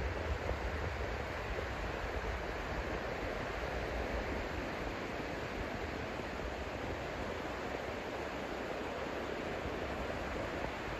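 Steady wash of surf breaking along the beach, with some low wind rumble on the microphone in the first second.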